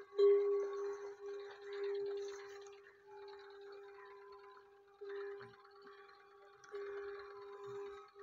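Metal neck bell on a buffalo ringing as the animal moves: one steady ringing note, knocked again several times so that it swells and fades.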